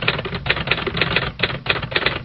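Typewriter sound effect: a rapid run of sharp key clacks, about eight to ten a second, with a short pause partway through, laid over text being typed out on a title card.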